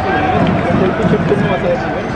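Spectators talking indistinctly close by over the general murmur of a ballpark crowd.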